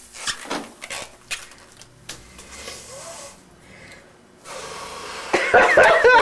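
A person breathing hard into a plastic bag held over the nose and mouth, in noisy, wheezy breaths. Laughter breaks out near the end.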